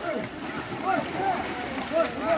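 Background chatter of several people's voices, with light splashing of water as an elephant wades through the shallows.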